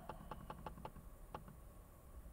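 Quiet car cabin with a few faint, irregular clicks: handling noise from the camera as it is turned toward the dashboard.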